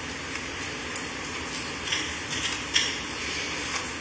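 Steady hiss of courtroom room tone, with a few brief light clicks or rustles in the middle.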